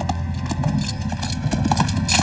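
Horse hoofbeats, a quick irregular run of thuds as the horse is ridden hard, over a low sustained music score.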